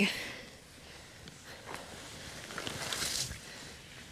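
Hay rustling and crackling under a hand as an egg is dug out of a hay pile, with soft handling clicks; the rustle grows loudest about three seconds in.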